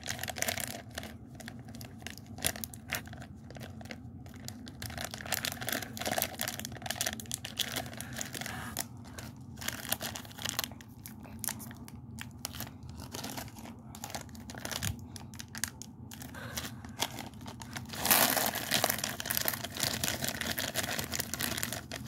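Plastic candy-packet wrappers crinkling and tearing as small snack packets are handled and ripped open, in an irregular run of crackles. About four seconds before the end the crinkling becomes denser and louder.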